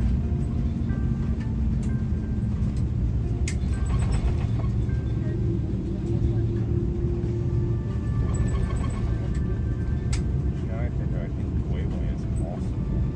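Cabin noise of an Airbus A330 rolling along the ground: a steady low rumble of engines and airflow, with voices and music over it.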